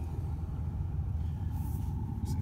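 Oldsmobile 307 V8 idling steadily, heard from inside the car's cabin as a low, even rumble.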